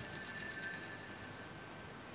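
Altar bells shaken in a quick jangling ring for about a second, then fading away. They mark the priest's communion from the chalice.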